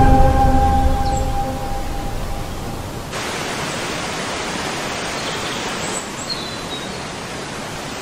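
Music with long held notes fades out over the first three seconds, then the steady rushing hiss of a small waterfall falling into a pool cuts in and runs on evenly.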